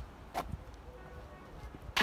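Two short, sharp thwacks, one early and a louder, crisper one near the end, over faint outdoor background.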